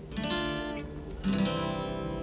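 Acoustic guitar strummed: two chords, one just after the start and another a little past a second in, each left to ring.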